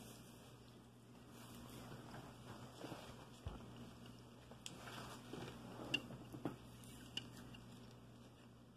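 Faint, scattered soft ticks and scrapes of a toothpick pressing and crimping the edges of a bread slice on a cutting board, over a low steady hum.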